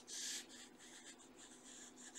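Faint pencil scratching on sketchbook paper: shading strokes laying in a core shadow, one firmer stroke at the start, then lighter ones.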